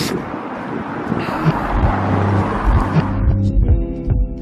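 A car passing on the street, its road noise swelling and then fading. Music with a steady thudding beat comes in about halfway and takes over near the end.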